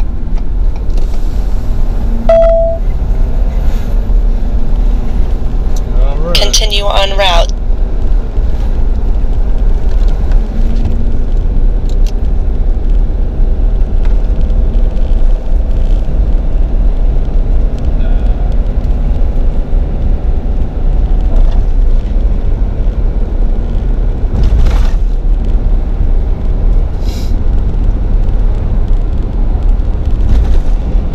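Steady low road and engine rumble inside a Ford F-350 pickup's cab while driving. A short wavering pitched sound comes about six seconds in.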